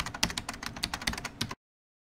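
Computer-keyboard typing sound effect: a quick run of key clicks that stops abruptly about one and a half seconds in, then silence.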